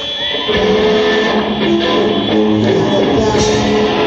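Rock band playing live, with an electric guitar carrying a melody of single notes that step up and down over the band.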